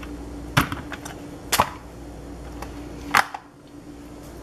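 Handling noise: three sharp clicks or taps, about a second apart and the last a little later, over a steady faint hum.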